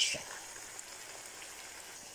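Pepper sauce frying in oil in a pan with freshly added sausage pieces: a faint, steady sizzle.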